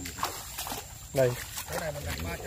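Dry grass stalks and twigs rustling and crackling as they are pushed aside by hand, with a man's voice speaking briefly about a second in.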